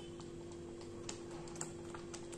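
Thick curry gravy simmering in a steel pan, giving a few small pops at irregular intervals over a steady low hum.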